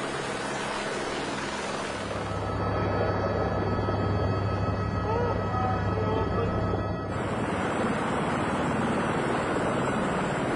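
Helicopter turbine and rotor noise, a steady loud running sound with a low hum. From about two and a half to seven seconds in it is heard from inside the cabin in flight, with a steady whine over it.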